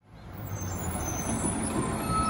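Diesel engine of a Labrie Automizer automated side-loader garbage truck running with a steady low rumble, fading in over the first half second.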